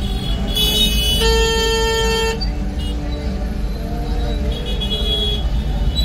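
Busy street traffic and crowd noise with a constant low rumble. Vehicle horns honk: a short high-pitched toot about half a second in, then one steady honk lasting about a second.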